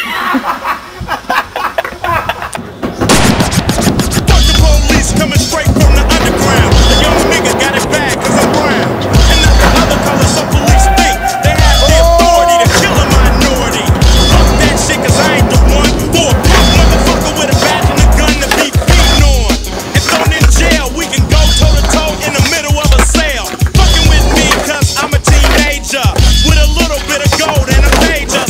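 Skateboard sounds, wheels rolling and boards clacking and slapping down, mixed with music. The music comes in loud about three seconds in, with a steady heavy beat.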